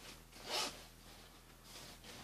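The zipper of a padded nylon child's winter jacket pulled once in a short swish about half a second in, followed by faint rustling of the quilted fabric.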